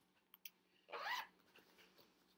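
A black fabric project bag being handled: a couple of faint clicks, then one brief rustle about a second in.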